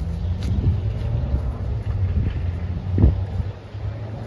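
Low, gusting wind rumble on the microphone, with one brief thump about three seconds in.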